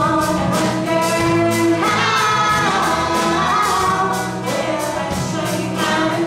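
Live acoustic folk-rock band playing a song: voices singing over strummed acoustic guitar with a steady beat.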